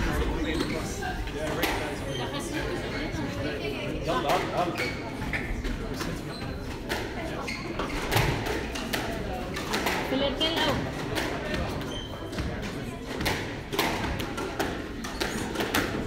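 Indistinct spectator chatter echoing in a large hall, crossed by sharp knocks of a squash ball off racket strings and court walls. The knocks come faster in the last few seconds as a rally gets going.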